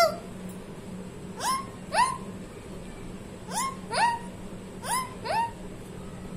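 Rose-ringed parakeet giving short, sharply rising calls, six of them in three pairs about half a second apart.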